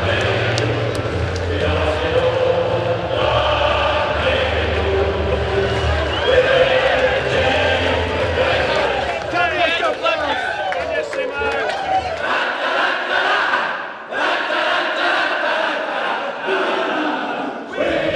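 Background music with a steady bass beat over crowd voices and cheering; about two-thirds of the way in the music cuts out and a group of footballers in a huddle sing their club song together after the win.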